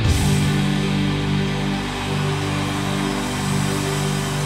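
Rock band playing live: held low chords from guitars and bass under drums, with a dense wash of cymbals.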